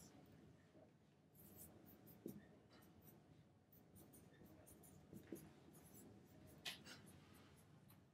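Faint squeaks and scratches of a dry-erase marker writing on a whiteboard, a string of short, irregular strokes with a few slightly louder ones.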